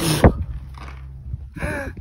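Wind buffeting and handling noise on a phone microphone as it is swung round, with a sharp rustling burst at the start and a steady low rumble after it; a short spoken sound near the end.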